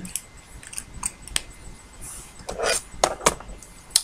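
A few clicks and clatters of small plastic items being handled, most of them in the second half: a liquid lipstick tube being picked up from among others.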